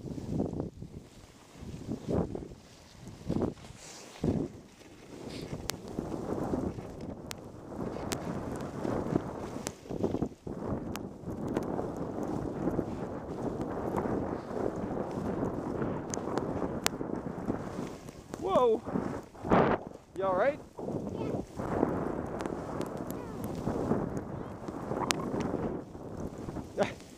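Skis sliding and scraping over snow on a downhill run, a continuous rough hiss mixed with wind on the microphone and scattered sharp clicks. Near the end a voice calls out briefly twice.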